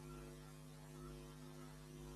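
Faint steady electrical hum of several tones over low hiss, the recording's noise floor with no other sound.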